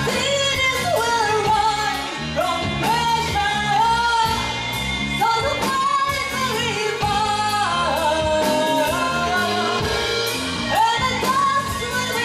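A live progressive rock band: a woman sings long, held melodic lines over keyboards and a steady drumbeat.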